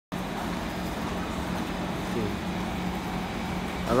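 C151 MRT train standing at the platform with its doors open, giving a steady low hum over a hiss of station noise. A voice starts right at the end.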